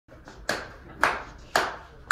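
Three sharp, evenly spaced taps about half a second apart, each dying away quickly: a steady count-in before the band starts playing.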